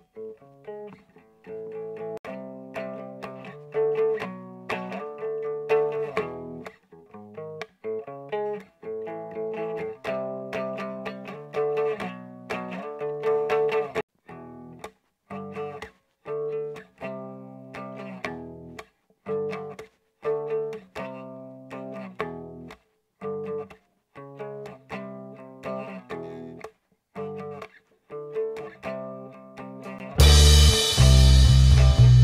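A 20-inch plastic toy guitar strummed with a pick, playing chords in short phrases with brief breaks. Its tuning pegs slowly unscrew, so it will not stay in tune.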